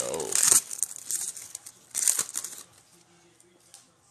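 A foil trading-card pack wrapper being torn open and crinkled by gloved hands, in several bursts over the first two and a half seconds.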